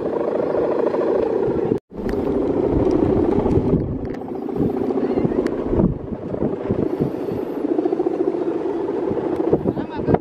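Humming bow (guangan) of a large Balinese bebean kite droning in the wind: a steady, buzzing hum that wavers in pitch. It breaks off for an instant about two seconds in.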